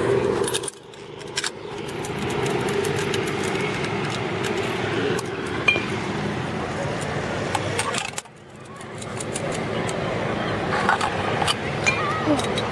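Light metallic clinking of zipline harness gear, carabiners and trolley being handled, over steady rushing wind noise on the microphone, which drops out briefly twice.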